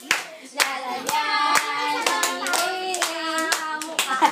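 A group of children and adults singing a birthday song together over hand clapping, the voices holding long steady notes through the second half.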